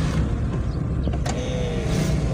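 Steady low engine and road rumble inside the cabin of a Toyota Agya on the move, with a single short click a little over a second in.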